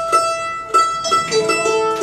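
Mandolin being tuned: single strings plucked a few times and left to ring, one high note held on steadily.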